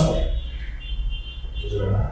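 A pause in a man's speech with a steady low hum underneath. His voice is heard briefly at the very start and starts again just before the end.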